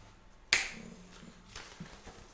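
A single sharp paper snap as a lyric sheet is flipped, about half a second in, then a fainter click near the end, with the acoustic guitar's strings ringing faintly under it.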